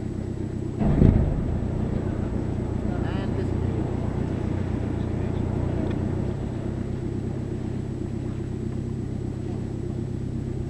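The UC3 Nautilus submarine's engine running steadily at slow speed during the approach, a low even drone. A short loud low burst about a second in, and the drone eases slightly about six seconds in.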